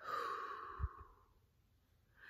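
A woman's breathy sigh, an exhale lasting about a second, with a brief soft low bump near its end.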